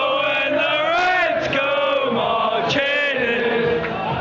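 Football supporters in the stand singing a chant together in unison, with held, wavering sung notes.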